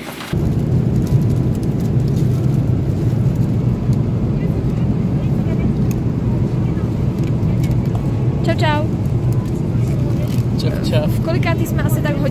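Steady low rumble of airliner cabin noise in flight, with brief voices about eight and a half seconds in and again near the end.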